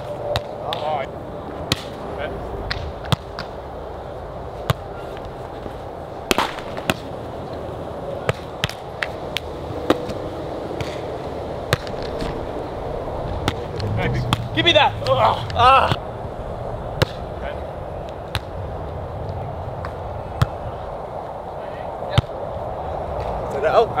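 Volleyball being knocked back and forth in a beach volleyball rally: sharp slaps of forearms and hands on the ball, one every second or two. Brief voices break in about fourteen to sixteen seconds in.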